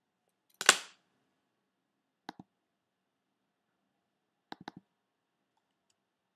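Clicks from a computer mouse and keyboard: one louder, sharper knock with a short tail just under a second in, a double click a little after two seconds, then a quick run of three or four clicks at about four and a half seconds.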